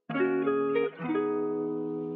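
Instrumental beat opening on plucked guitar chords, a new chord or note about every half second, with no drums yet.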